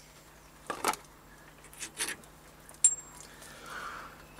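A few faint short clicks and knocks of small parts being handled by hand, with no machine running: one about a second in, a pair around two seconds, and a sharper click with a brief high ring near three seconds.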